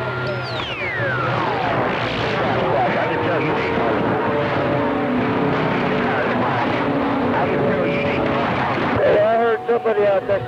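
CB radio receiving distant stations on channel 28: a thick wash of static with faint, overlapping voices and heterodyne whistles, one whistle sliding down in pitch in the first two seconds. A clearer station's voice breaks through near the end.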